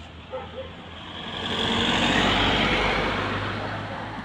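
A road vehicle passing close by: its engine and tyre noise swell up about a second in, peak around two seconds and fade toward the end.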